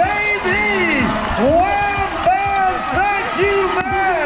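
Continuous, excited speech with a strongly rising and falling pitch, typical of a race announcer over a public-address system, with crowd noise beneath.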